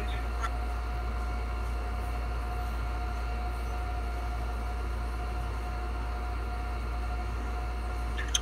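Steady low background hum with a faint constant tone above it; two faint clicks about half a second in.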